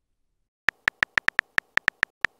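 Phone keyboard typing sound effect: a quick, slightly uneven run of short, high-pitched tick-like blips, one per letter, starting under a second in after silence.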